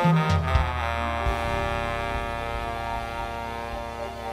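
Live jazz band playing: baritone saxophone and bass sound a few low notes, then the band holds a long sustained chord that slowly fades.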